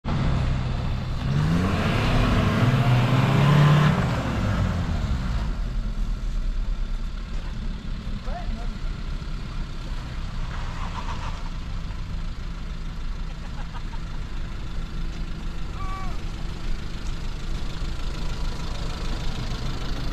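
Small Suzuki four-cylinder 4x4 engine revved hard for a few seconds, pitch climbing and then falling away, while pulling against a recovery rope to free a stuck Jimny. Then engines idle with a steady low hum, with a few short distant voices.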